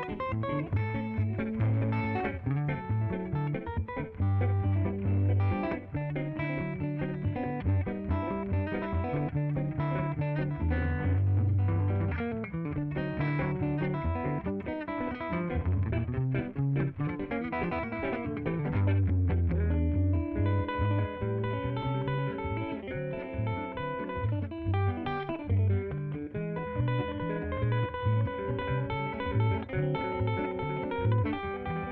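Live instrumental rag with two guitars picking the tune over electric bass and a drum kit.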